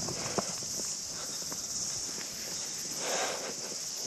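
A steady, high-pitched chorus of insects in long grass, with faint footsteps and rustling as someone walks through it.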